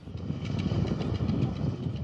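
Uneven low rumbling noise of an outdoor location recording, with no voice.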